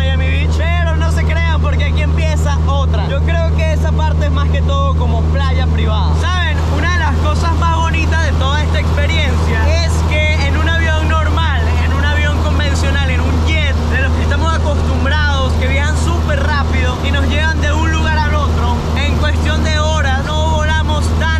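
Steady low drone of a small plane's engine and propeller, heard inside the cabin in flight, with a man's voice over it throughout.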